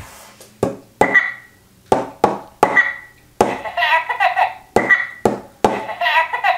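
A McDonald's Happy Meal talking Kevin Minion toy laughing from its small speaker, in a string of short bursts that each start abruptly, with a longer stretch of laughter in the middle.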